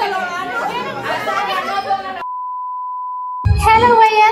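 People's voices talking over music, then a steady, pure, high beep lasting just over a second that replaces all other sound, the kind of bleep edited in to cover a word. Speech starts again right when the beep cuts off.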